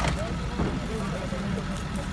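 Several men talking faintly in the background over a steady low rumble, with a couple of brief clicks near the start.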